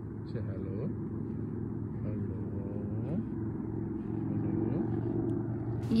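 Steady low mechanical hum of a chairlift in motion, with faint voices talking now and then.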